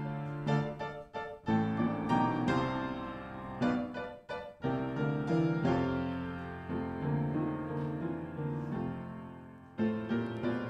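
Piano playing a gentle chordal introduction, the chords struck and left to ring and fade, leading into a sung hymn that begins just after.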